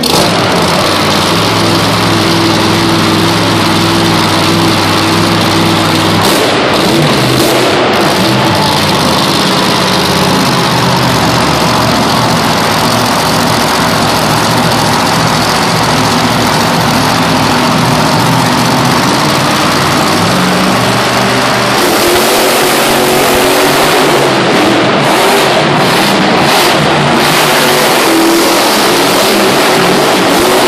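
Monster truck engines (supercharged big-block V8s) running loud. The note is steady for the first few seconds, then the engines rev up and down, rising again from about two-thirds of the way through.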